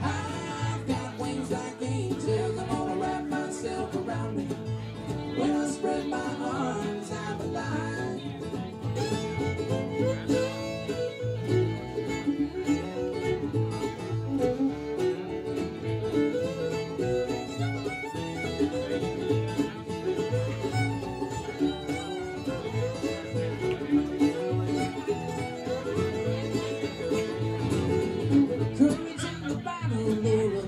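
Live acoustic bluegrass string band playing: strummed acoustic guitar, mandolin, fiddle and a steadily pulsing upright bass.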